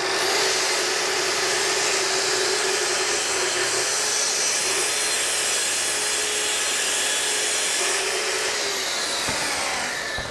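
Track saw ripping a narrow strip off the factory edge of a plywood panel along its guide rail. The motor whine climbs as it spins up at the start, the cut runs steadily for about eight seconds, and the motor winds down near the end.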